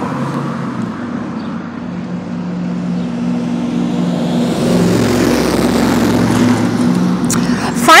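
Motor vehicle going by, engine hum with road noise that swells to its loudest about five seconds in, then eases off.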